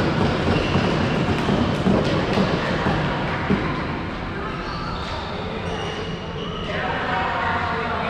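Indistinct voices of young floorball players echoing in a large sports hall, with scattered sharp knocks of sticks and ball on the court, busier in the first half.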